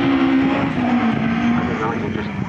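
A rally car's engine running out on the circuit, its note falling steadily over about a second and a half.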